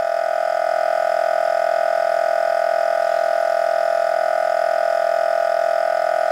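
Inverter-driven variable-speed refrigeration compressor running steadily at its lower speed of about 2000 rpm, a constant-pitch electric whine with no change in speed.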